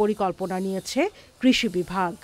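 Speech only: a person talking in Bengali, with sharp hissing 's' sounds.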